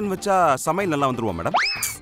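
A voice speaking for about a second and a half, then a quick rising slide-whistle comedy sound effect.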